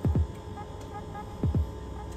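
Heartbeat-like suspense effect: a double thump, each beat a low falling boom, comes twice, at the start and about a second and a half later. Under it runs a steady electronic hum with a quick light ticking.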